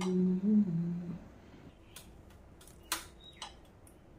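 A person humming a few held notes for about the first second, the pitch stepping up briefly and back down. Then a few light clicks and knocks.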